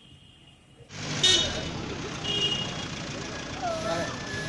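Busy outdoor background noise of traffic and a crowd's voices, cutting in abruptly about a second in after a quiet start, with a couple of short high beeps.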